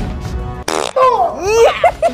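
A woman laughing in high, swooping bursts over background music, with a short rough burst of noise a little before she starts.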